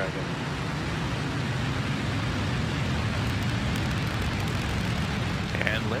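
Falcon 9 first stage's nine Merlin 1D engines firing just after liftoff: a steady, dense rocket rumble.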